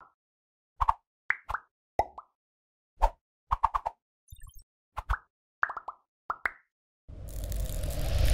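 Cartoon plop sound effects: about fifteen short, bubbly pops, some sliding upward in pitch, coming singly and in quick clusters with silence between, in time with an animated countdown. About seven seconds in, a noisy whoosh swells up and grows louder.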